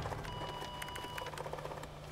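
HP fax machine printing a received page as the paper feeds out: faint light ticking over a low steady hum, with a thin steady tone for about a second near the start.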